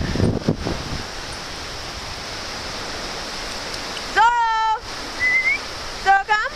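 Steady rushing hiss of small waves and wind along a pebbly shoreline. About four seconds in, a person's loud, drawn-out, high-pitched call that falls and then holds, followed by a short rising chirp.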